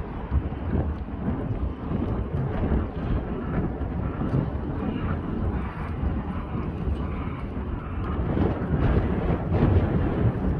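Wind buffeting the microphone: an uneven low rumble that swells somewhat near the end.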